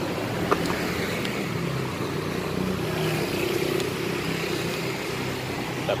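Steady street traffic, with a vehicle engine humming past, and a few light clicks of a container lid and serving spoon as rice is scooped.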